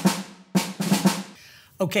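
Short percussive music sting of drum hits with snare, one at the start and another about half a second in, each fading out.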